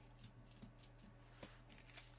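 Near silence with faint crinkling of thin gold Mylar film being gently torn away along an embroidered stitch line, with two faint ticks in the second half.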